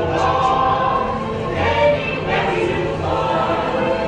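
Choir singing over music, the ride's recorded soundtrack played through the attraction's speakers.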